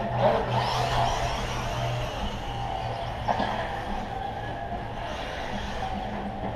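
Radio-controlled short course trucks racing on a dirt track, their motors whining up and down in pitch, loudest in the first second, over a steady low hum.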